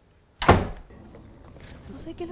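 A front door slammed shut once, about half a second in: a single sharp bang that dies away quickly.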